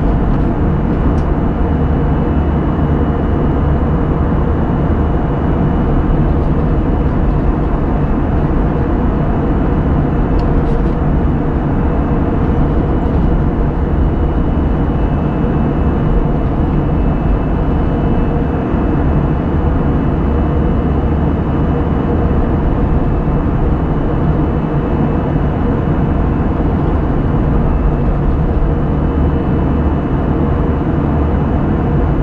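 Airbus A320-200 cabin noise heard at a window seat beside the wing-mounted engine during the climb: engines and rushing air make a loud, even noise with a faint steady whine above it. A few faint ticks sound about a second in and again about ten seconds in.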